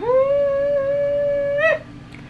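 A woman's long, high held "ooooh" of delight: the pitch rises quickly at the start, stays steady for about a second and a half, and flicks up as it ends.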